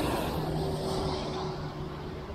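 Road traffic: a steady hum of vehicles with a held low engine drone that eases off near the end.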